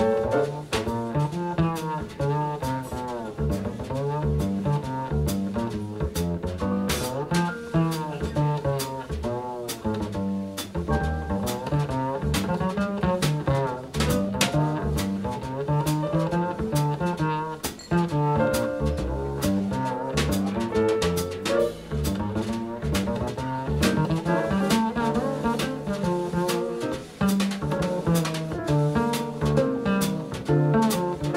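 Instrumental jazz passage from a live quartet, with no vocals: double bass to the fore over drum kit and electric piano.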